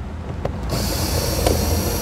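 Cordless drill with a socket running to back out a door-panel bolt: a click, then the motor starts about two-thirds of a second in with a steady high whine.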